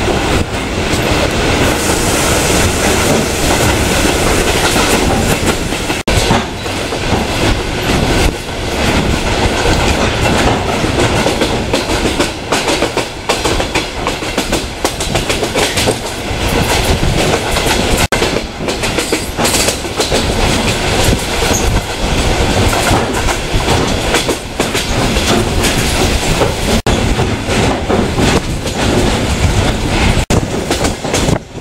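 Passenger train running at speed, heard from inside the carriage: a loud, steady rumble of wheels on the rails, with the clatter of the wheels passing over rail joints.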